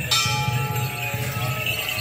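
Traditional procession music: a struck metal percussion instrument rings just after the start, several steady tones dying away over about a second and a half, over repeated low drum beats.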